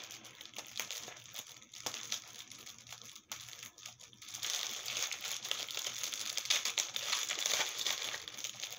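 Plastic bags crinkling and rustling as they are handled and opened. The rustle thins out briefly around the middle and grows busier again in the second half.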